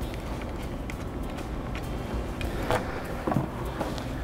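Faint clicks and scrapes of a screwdriver loosening the hose clamp on a hydraulic pump's plastic reservoir tank, over a steady low hum.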